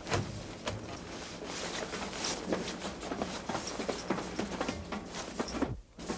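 Irregular knocks, clicks and rustling as crew in immersion suits handle and secure a boarding ladder at a ship's steel rail, over a steady rushing background. The sound cuts out briefly near the end.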